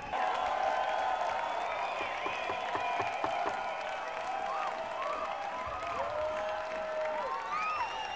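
Large concert audience applauding and cheering to call the band back for an encore, with shrill calls gliding up and down in pitch over the steady clapping. The level jumps up sharply right at the start.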